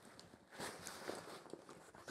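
Faint rustling of nylon webbing and light ticks of metal G-hooks as the straps of an Alps Outdoors hunting pack are unhooked by hand, starting about half a second in.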